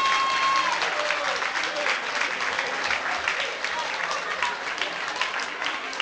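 Audience applauding at the end of a song, with voices in the crowd. The song's last held note dies away about a second in as the clapping takes over.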